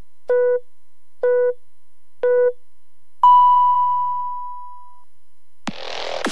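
Radio time signal marking eleven o'clock: three short beeps about a second apart, then one long, higher beep on the hour that fades away. Music starts just before the end.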